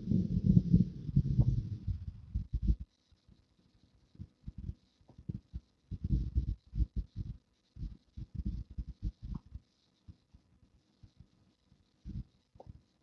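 Tesla Model 3 cabin fan air buffeting the microphone: low rumbling gusts, dense with a faint fan hiss for the first two to three seconds, then broken and irregular. The fan is running high because its setting keeps reverting to auto.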